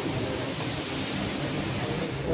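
Steady hissing background noise with faint, indistinct voices underneath.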